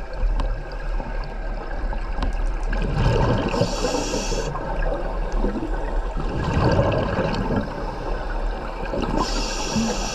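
Scuba regulator breathing heard underwater over steady water noise. Two high hisses of air drawn through the regulator, each about a second long, come about three and a half seconds in and again near the end, with low bubbling rumbles of exhaled air between them.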